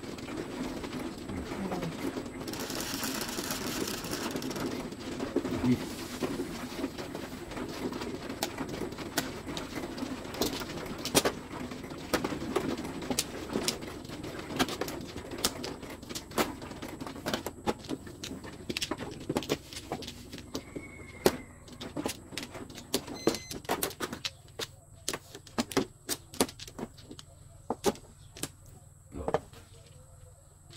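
Plastic mahjong tiles clicking and clacking against each other and the felt as walls are pushed into place, tiles are drawn and discards are set down: many short sharp knocks, more spaced out near the end. A low steady hum lies under the first two-thirds.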